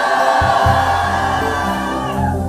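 Church worship music: many voices holding a sung note together, with a low steady bass note coming in about half a second in.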